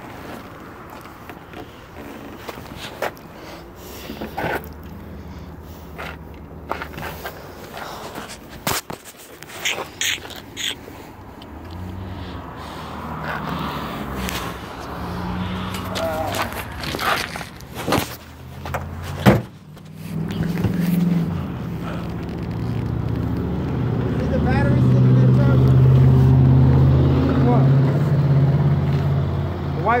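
Knocks, clicks and rubbing from a phone being handled against clothing. About two-thirds of the way in, a low steady hum like a car engine running nearby takes over and becomes the loudest sound.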